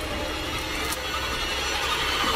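A metal door handle and latch rattled and jiggled repeatedly as someone tries to open a wooden door.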